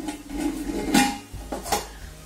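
Stainless steel pressure cooker lid being fitted and turned shut on the pot: metal scraping and clinking, with two sharp metallic clicks, the first about a second in and the second near the end.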